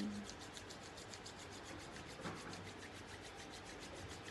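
Palms being rubbed briskly together to warm them: a faint, fast, even swishing of skin on skin.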